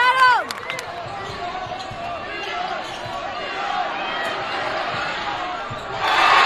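Indoor basketball game sound on a hardwood court: a short, falling sneaker squeak at the start, then a ball being dribbled and scattered voices from players and a small crowd.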